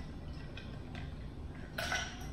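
Drinking glasses and ice clinking faintly while people sip a drink, with a short louder clink or rattle near the end.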